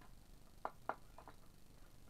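A few sharp clicks of small hardware being handled against a wooden tabletop: two distinct clicks about a quarter second apart, then two fainter ones. There is no drill motor running.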